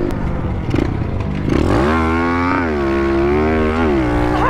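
Pit bike engine revving up hard about a second and a half in, its pitch climbing and then held high, with a brief dip in pitch about halfway through.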